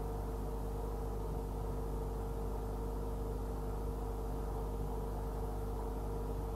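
A steady electrical hum, with a deep low drone, a constant mid-pitched tone and faint hiss, unchanging throughout; no other sounds.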